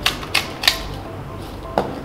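Hand pepper grinder twisted over a bowl of mashed potato: three sharp grinding clicks about a third of a second apart in the first second, then one knock near the end.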